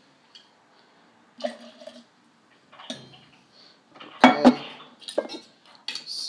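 Glass bottle and jigger clinking and knocking against each other and a granite countertop while gin is measured out, a few scattered knocks with the loudest, a sharp double knock, about four seconds in.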